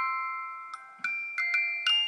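Wind-up music box in a musical spinning cake stand plucking its tune. It gives a few single notes, about one every half second, each ringing on and fading under the next.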